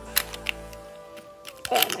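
Plastic novelty Pyraminx being turned fast during a speedsolve, its pieces clicking and clacking in short bursts, over background music. Near the end a sharper clatter comes as the puzzle pops, pieces coming loose.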